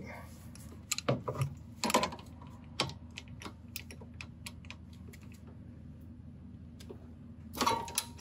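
Ratchet clicking in irregular runs as it loosens a 15 mm bolt on a car's front strut bracket, the clicks thinning out in the second half, then a louder clatter near the end.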